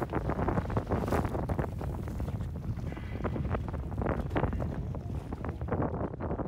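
Wind buffeting the microphone in irregular gusts, over the low rumble of a boat moving on open water.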